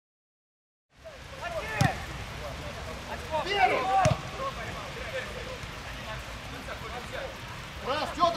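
Field sound of a football match, starting about a second in: players shouting to each other across the pitch over a steady outdoor hiss, with two sharp thuds of the ball being kicked, about two seconds apart.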